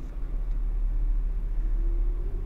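Steady low rumble of background room noise, with no speech over it and a faint thin hum in the second half.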